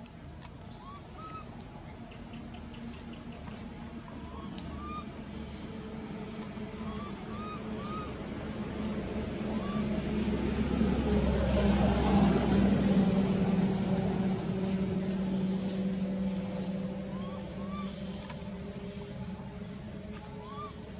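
A motor vehicle passing: a steady engine hum swells for several seconds, is loudest about halfway through, then fades. Short rising chirps repeat throughout.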